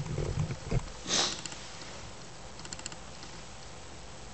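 A person sniffing once through the nose about a second in, the sniffle of someone with a head cold. A short thump comes just before it, and a few faint clicks follow near the end.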